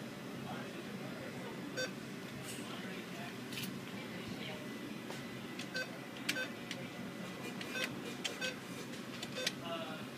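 ATM keypad beeping as its buttons are pressed: about six short single beeps at irregular intervals, most in the second half, with a few key clicks over a steady background hum.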